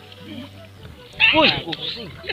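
A man's loud shout of "Oi" with a falling pitch, about a second in, over low talk and water splashing around the net.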